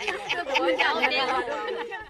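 A group of women's voices talking and calling out over one another at once, with some voices briefly held as if half-sung.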